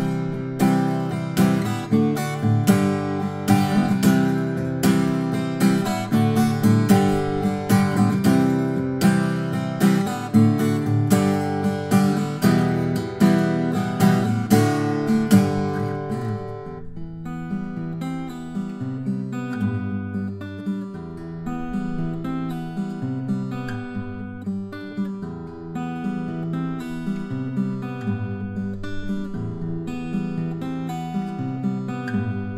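Small-body 12-fret acoustic guitar with a cedar top and cocobolo back and sides, fingerpicked. A fuller, louder passage runs for about the first sixteen seconds, then the playing turns quieter and sparser.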